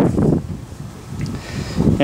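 Wind rumbling on the microphone: a low, uneven rumble in a pause between words.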